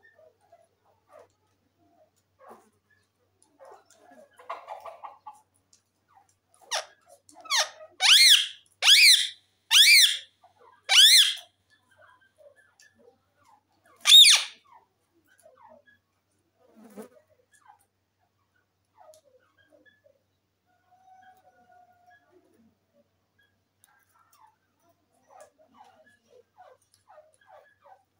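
Indian ringneck parakeet calling in a run of shrill screeches: two softer calls about seven seconds in, then four loud ones about a second apart, and a single loud one a few seconds later.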